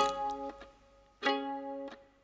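Sparse folk-song accompaniment on a plucked string instrument: one chord at the start and another about a second later. Each rings briefly and fades, with near silence between them.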